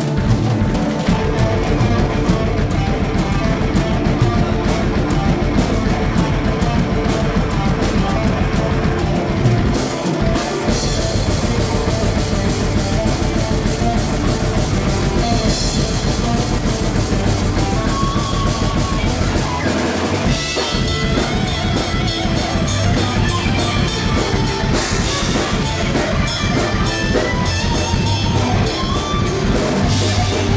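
Live melodic death metal band playing an instrumental passage on distorted electric guitar, bass guitar, drum kit and keyboards, with no singing. The band breaks briefly into a new section about ten seconds in and again about twenty seconds in.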